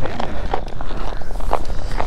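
Footsteps crunching through packed snow on lake ice, a quick irregular series of steps over a steady low rumble.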